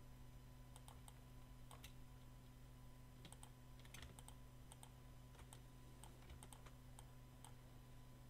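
Faint, irregular clicks of computer keyboard keys, the space bar and command key pressed and released to zoom and pan, over a low steady electrical hum.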